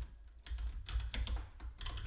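Typing on a computer keyboard: an uneven run of short key clicks as a value is entered into a text field.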